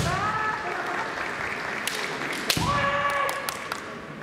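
Kendo fencers' kiai shouts, one right at the start and another about two and a half seconds in, each rising and then held briefly, with sharp clacks of bamboo shinai striking, the loudest just before the second shout.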